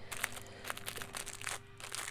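Faint crinkling of a clear plastic bag being handled, with a few light scattered ticks, over a faint steady hum.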